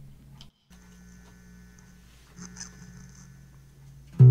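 Faint steady low hum over quiet room tone, broken by a brief dead-silent gap about half a second in.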